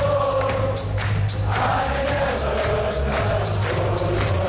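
Live rock band playing, with a steady drum beat and bass, while many voices sing a long, drawn-out melody along with it.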